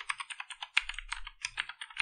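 Computer keyboard typing: a quick, uneven run of keystrokes as a line of code is typed.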